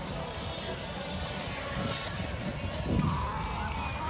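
Wind rumbling on the microphone at the beach. About three seconds in there is a loud thump, followed by a wavering, honk-like call that is most likely a gull.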